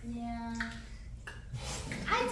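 A person's voice holds one short note for about half a second, followed by a few faint short noises.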